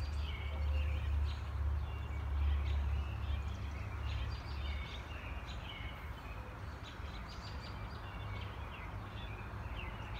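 Birds chirping outdoors in short, repeated calls, over a low rumble that is strongest in the first half and eases about five seconds in.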